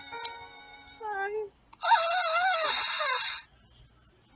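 Recorded violin music: a held chord fades, a short falling slide follows, then a loud wavering note lasts about a second and a half and stops.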